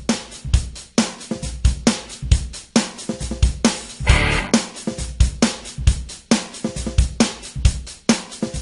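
Background music with a steady drum-kit beat of kick, snare and hi-hat, with a brief noisy swell about halfway through.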